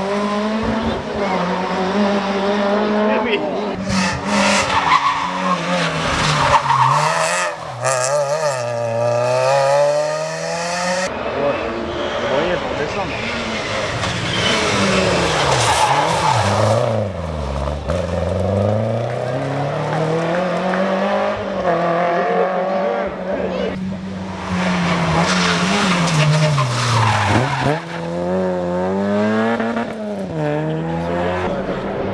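Rally car engines revving hard through bends, one car after another, their pitch climbing under acceleration and dropping on gear changes and lifts. Tyre noise comes in on the corners.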